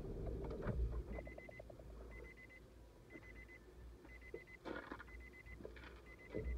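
A car's idling engine stops under a second in, and the car's warning chime then beeps about once a second, each beep a quick string of pulses. A few knocks sound in between, one about three-quarters of the way through.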